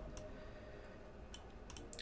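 A few faint clicks from computer input at a desk, one just after the start and three more in the last second, over low room noise.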